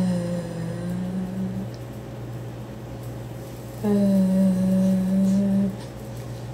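A woman humming two long, low held notes, the first sliding slightly down and the second starting about four seconds in, over a steady low background hum.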